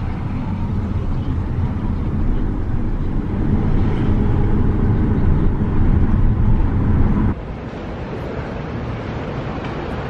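Road noise inside a moving car: a steady low rumble of engine and tyres, giving way about seven seconds in to a quieter street hum.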